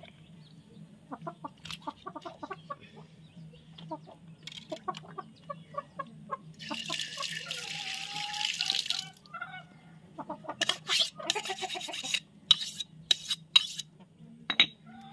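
Chickens clucking repeatedly, with a hissing rush of noise lasting about two seconds in the middle and a run of sharp clicks or knocks near the end.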